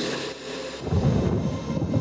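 Bass-boosted electro house track between vocal lines: a rumbling noise wash, then the heavy bass comes back in about a second in.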